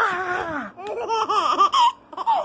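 Baby laughing: one drawn-out laugh that falls in pitch, then, about a second in, a quick run of short laughs.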